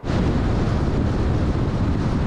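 Steady rushing road and wind noise from a car driving at highway speed, an even hiss over a low rumble.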